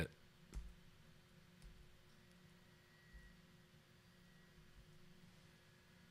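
Near silence with four faint, short clicks from clicking through a photo gallery on a computer. The first click, about half a second in, is the loudest.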